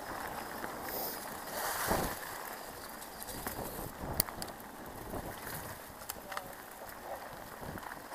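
Mountain bike riding over a leaf-covered dirt trail: a steady rushing noise with scattered rattles and clicks from the bike, the sharpest about four seconds in.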